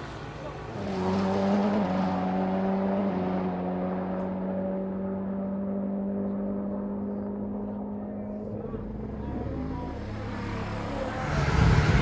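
A vehicle engine running steadily for several seconds, its pitch sinking slightly as it goes. Voices grow louder near the end.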